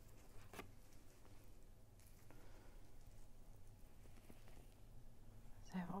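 Near silence with faint handling noises: cloth being dipped and worked by hand in a tray of wood glue thinned with water, with a soft click about half a second in, over a low steady room hum.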